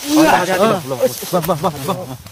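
A person's voice speaking loudly, with a faint hiss behind it.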